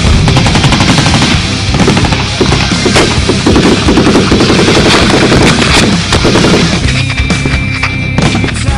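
Rapid small-arms and machine-gun fire, many shots in quick succession, with heavy rock music playing underneath; the shooting thins out near the end.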